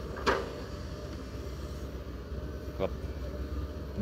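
Sumitomo hydraulic excavator's diesel engine running steadily with a low hum as it works a large bucket through mud. A short voice sound comes just after the start and another near the end.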